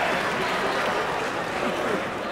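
Audience applauding: an even patter of many hands clapping that eases off slightly near the end.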